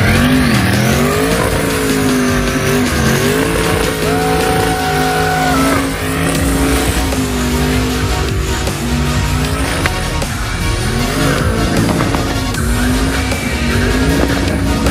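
Twin-turbo LS V8 in a tube-frame BMW 3 Series burnout car, revving hard with its pitch rising and falling over and over through a burnout, with tires spinning on the pad.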